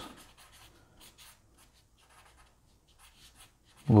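Paper blending stump rubbing over pencil graphite on drawing paper: faint, short scratchy strokes as the shading is blended in.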